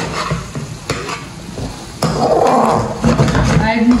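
Slotted metal spatula stirring and scraping corn kernels frying in a pan, with sizzling; it gets louder about halfway through.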